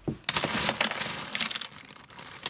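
Pens and pencils clattering against each other in a tin as a hand rummages through them: a dense run of rattling clicks that thins out near the end.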